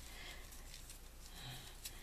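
Quiet room tone with a low hum and a faint rustle of paper being handled as a cut paper spiral is rolled up into a flower.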